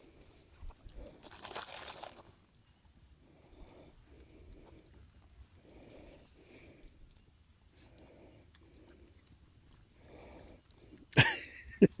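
Alpacas chewing feed taken from a hand, faint and irregular, with a short rustle of the paper feed bag about a second and a half in. A loud laugh breaks in near the end.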